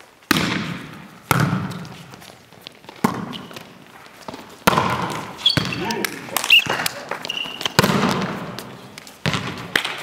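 A volleyball being struck repeatedly in serves and passes, about seven sharp hits a second or two apart. Each hit echoes and dies away in a large sports hall. Players' voices and brief high squeaks come between the hits.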